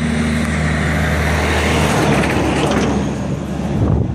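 A big truck passing close by on the road, loud: a low engine hum that fades about halfway through while a rush of tyre and air noise builds.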